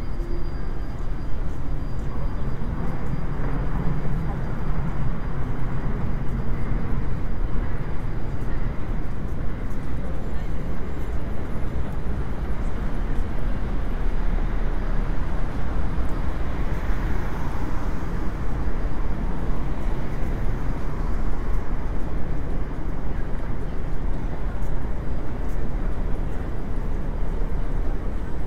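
Busy city street noise: road traffic running steadily, with a car passing close a few seconds in, and the voices of passers-by on the pavement.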